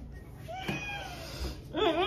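A woman's squealing laugh held in behind closed lips, her mouth full of water: two high, whiny cries, the first falling in pitch and the second, louder one wavering up and down about two-thirds of the way in.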